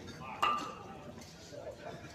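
A bowl clicking against another bowl in the head: a single sharp click with a brief ringing note about half a second in, over faint hall background.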